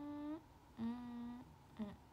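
A young woman humming with her mouth closed: a held note that rises slightly, a longer level note about a second in, and a short note near the end.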